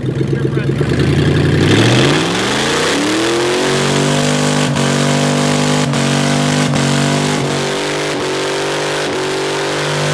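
Dodge Dakota pickup doing a burnout: the engine revs climb over about two seconds and are then held high and steady while the rear tyres spin and smoke on the pavement. The held revs break briefly several times.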